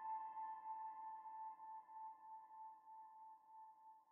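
A single held electronic note with a few faint overtones, fading slowly away: the tail of a sustained sound in the track being played back.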